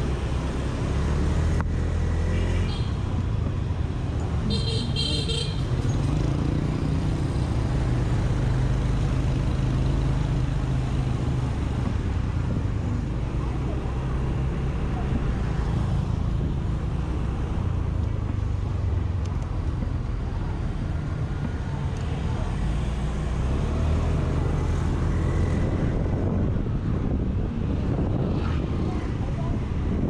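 Small Honda scooter engine running while ridden through city traffic, its pitch rising and falling gently with speed, over a bed of traffic noise. A vehicle horn beeps briefly about five seconds in.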